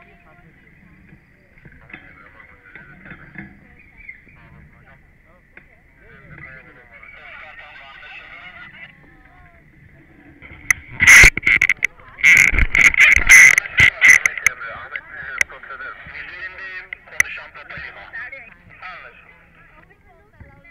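Hot-air balloon's overhead propane burner firing in a series of short, very loud blasts with brief gaps, starting about halfway through and lasting a few seconds.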